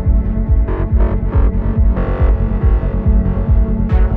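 Psytrance track playing: a fast, driving kick drum and rolling bass line, with short synth stabs about a second in and again around two seconds in.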